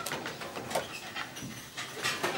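Light kitchen clatter: scattered clinks and taps of dishes and utensils.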